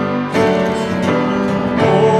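A slow gospel song played on fiddle, acoustic guitar and piano, with the chords changing about a third of a second in and again near the end.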